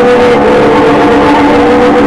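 Live noise music at very high level: a dense wall of distorted noise with a few sustained drone tones that waver slightly in pitch.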